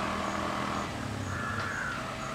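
A low, steady engine hum that dies away about a second in, followed near the end by a single harsh, slightly falling bird call.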